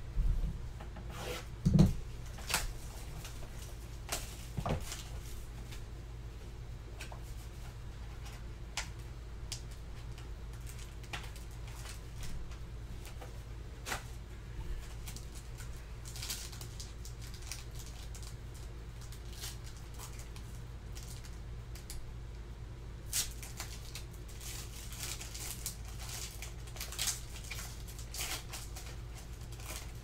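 Handling of trading-card boxes and wrappers: a thump about two seconds in, then scattered small clicks and rustles, growing into denser crinkling near the end as a foil card pack is torn open. A steady low hum runs underneath.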